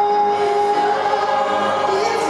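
A small gospel choir singing in harmony, holding a long, steady chord.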